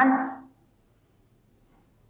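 Faint scratching strokes of a marker writing on a whiteboard, a few short strokes towards the end, after a spoken word trails off at the start.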